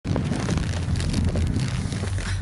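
Wind buffeting the camera microphone in a steady low rumble, with quick crackling strokes over it, likely snow crunching as someone moves and sits down in it.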